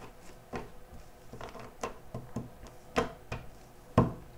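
A deck of tarot cards being shuffled and handled by hand: irregular soft clicks and taps of the cards, with a sharper snap near the end.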